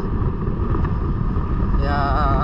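Steady, rough low rumble of a motorcycle being ridden along a paved road, mostly wind buffeting the microphone mixed with engine and road noise.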